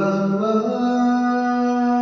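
A recorded lead vocal played back through the Focusrite FAST Verb plugin set fully wet and wide: one long sung note, stepping up in pitch about half a second in, drenched in reverb.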